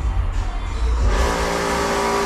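A steady pitched machine drone with a hiss comes on abruptly about a second in and holds steady.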